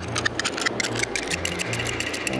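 Scene-change music: low bass notes under a fast, busy ticking of about ten ticks a second.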